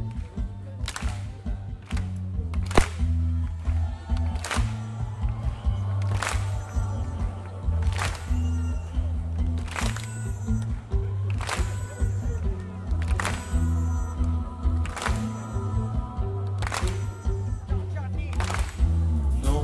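Live rock band playing an instrumental passage with no vocals: electric guitars, bass guitar and keyboards over drums, with a sharp drum hit landing about every second and three-quarters.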